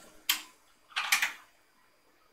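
Computer keyboard keys being pressed: a single click about a quarter second in, then a short cluster of clicks about a second in, as the browser page is zoomed out.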